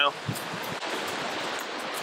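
Steady rush of a small rocky stream running over stones.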